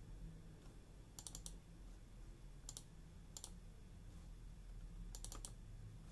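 Faint, sharp computer mouse clicks in small groups: a quick run of three or four about a second in, two single clicks in the middle, and another run of three near the end, over a low steady hum.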